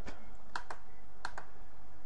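Computer keyboard keys tapped four times in two quick pairs, as a number is typed into a settings field.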